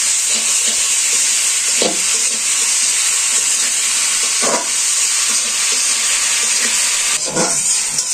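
Shredded vegetables sizzling steadily as they fry in a wok, with three short stirring strokes of a metal spatula.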